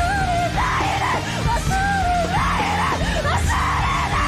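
Live rock-band music with a female singer belting in a screaming, strained voice over a steady bass and drums, the voice gliding up and down in pitch.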